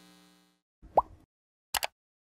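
Sound effects of an animated subscribe button: a short pop whose pitch rises quickly about a second in, then a quick double mouse click near the end.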